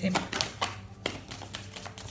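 A deck of oracle cards being shuffled by hand, with a few light clicks of card edges in the first second.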